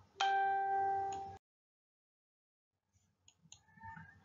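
A single electronic chime: one steady ding with ringing overtones, held about a second and fading before it cuts off. A few faint clicks follow near the end.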